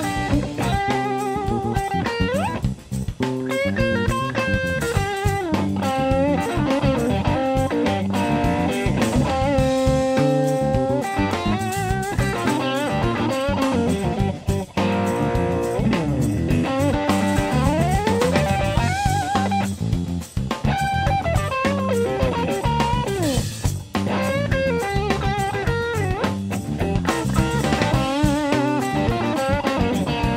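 Live electric blues band in an instrumental break: a Stratocaster-style electric guitar plays lead lines with string bends and slides over electric bass and a drum kit.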